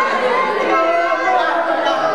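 Several people talking over one another at once: overlapping chatter.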